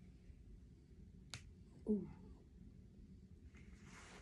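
A single sharp click, then about half a second later a short falling vocal sound, like a brief 'mm' or grunt.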